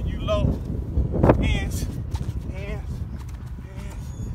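Wind rumbling on a phone microphone, with a young child's short high-pitched squeals and shouts, the loudest about a second and a half in.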